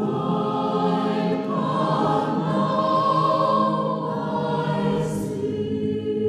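A choir singing, with several voices holding long notes together as the chords change.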